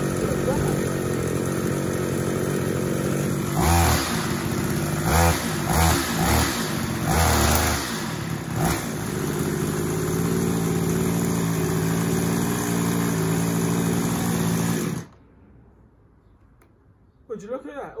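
Small 26cc two-stroke strimmer engine running after starting on the first pull with a replacement carburettor. It is revved in several short throttle blips, runs on steadily, then is switched off and stops suddenly near the end. The old carburettor's float bowl kept filling with air, and that was the fault.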